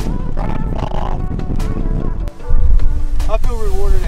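Wind rumbling on the microphone under a voice for the first two seconds. Then background music with a heavy bass beat and a singing voice comes in suddenly and loudly a little past halfway.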